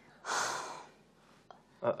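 A person's single breathy exhale, like a sigh, lasting well under a second, from someone stumped by a puzzle; a voice with a laugh comes in near the end.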